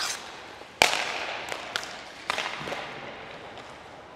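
Ice hockey shot at a goalie: one sharp crack of stick on puck and puck on gear about a second in, ringing in the arena, followed by a few lighter knocks of puck and stick on the ice.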